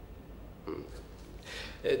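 A pause in a man's speech: quiet room tone with two faint short vocal sounds, one about two-thirds of a second in and one just before he speaks again near the end.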